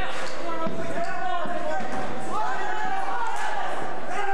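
Voices of onlookers calling out in a hall during a grappling bout, with a few dull thumps of bodies on the ring mat about a second in.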